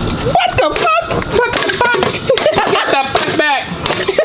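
Several excited men's voices, exclaiming and laughing over one another, with a few short sharp clicks among them.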